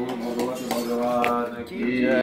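Male voice chanting a sustained, slightly wavering devotional line, the loudness dipping briefly near the end.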